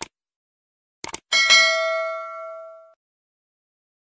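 Subscribe-button sound effect: a click, then a quick double click about a second in, followed by a bright notification-bell ding that rings and fades out over about a second and a half.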